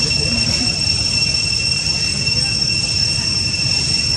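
Cicadas droning steadily at one high pitch, over a low rumbling noise.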